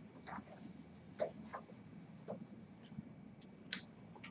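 Near-quiet room with a few faint, short clicks and ticks at irregular intervals, the clearest a little past one second in and just before the end.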